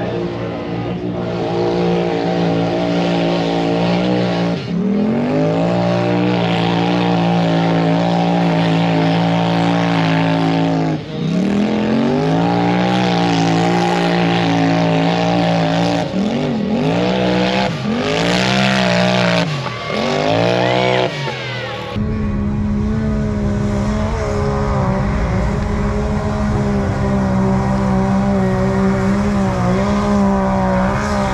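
Off-road vehicle engine revving hard on a dirt course, its pitch climbing and dropping again and again, with quicker rev sweeps near the middle. About two-thirds of the way through the sound changes suddenly to a steadier engine note over a low rumble.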